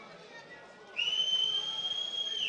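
Referee's whistle: one long, steady blast starting about a second in and lasting about a second and a half.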